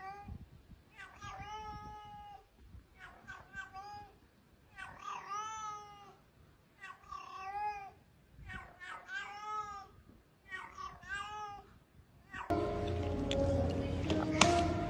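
A kitten meowing repeatedly: about seven high-pitched meows, each rising then falling, one every second and a half to two seconds. Near the end louder music takes over.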